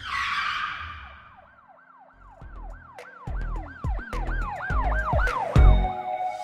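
Channel logo intro sting: a whoosh and hit that fades, then a siren-like wail rising and falling about three times a second over deep bass hits, ending in a heavy bass hit near the end.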